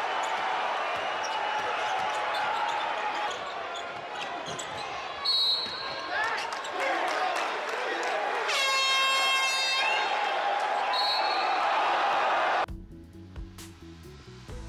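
Basketball arena crowd cheering a slam dunk, under a television commentator's voice. A horn sounds for about a second just past the middle. The crowd sound cuts off abruptly near the end.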